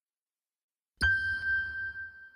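Silence, then about a second in a single bright, bell-like chime struck for the Sony logo, ringing on with a steady high tone over a low rumble and fading.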